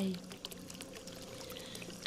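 The last syllable of a calm spoken voice trails off. After it comes a faint, steady background of trickling, pouring water, flecked with small droplet-like ticks, with a faint steady tone beneath it.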